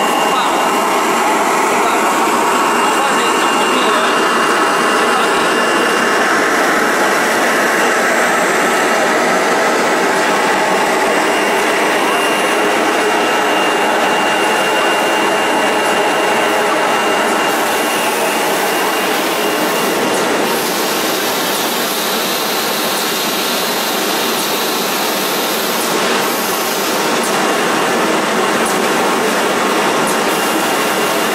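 Handkerchief tissue paper machine line running: a loud, steady mechanical clatter of its rollers and folding units, with a faint steady whine in the first half. About two-thirds of the way through the sound shifts, with more high hiss.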